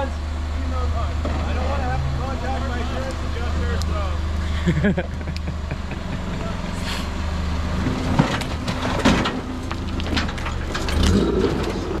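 Rock buggy engine running with a steady low rumble as the buggy crawls up a steep rocky climb, with a few sharp knocks and clatters about eight to nine seconds in.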